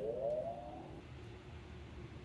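Okuma CNC lathe's electrical cabinet powering up after the main disconnect is switched on: a brief rising whine over about the first second, settling into a steady low hum.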